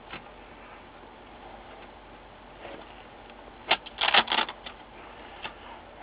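Adhesive tape being peeled up by hand from the signal-cable connector on an LCD panel's metal frame: low handling rustle, then a short cluster of crackles about two-thirds of the way through and a single tick near the end.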